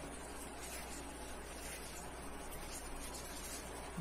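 Faint, steady room tone: a low hiss with a constant low hum, and no distinct sound standing out.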